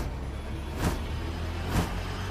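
Dramatic sound design under the score: a steady low rumble with sharp whooshing hits about once a second, three of them in quick succession, as the cabin is shown being thrown about.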